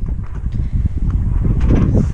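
Wind rumbling on the camera microphone, with irregular knocks of footsteps on wooden decking.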